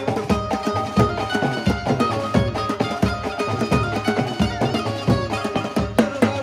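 Live Maharashtrian banjo-band music: drums, including a dhol, beat a steady driving rhythm under a melody line played through loudspeakers.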